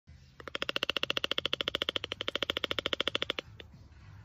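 Toco toucan giving a rapid rattling call: an even train of about a dozen pulses a second, lasting about three seconds.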